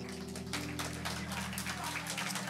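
Soft background music holding low sustained chords, with scattered light taps and rustling over it.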